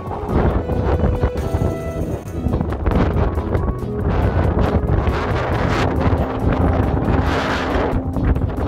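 Wind buffeting the microphone with a heavy, uneven low rumble, over background music.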